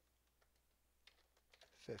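Faint typing on a computer keyboard: a handful of separate keystrokes, spaced irregularly.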